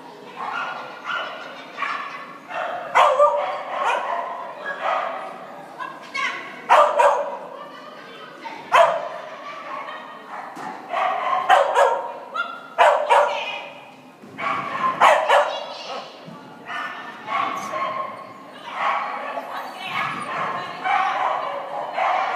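Small dog barking and yipping over and over in short, sharp barks, excited barking while running an agility course.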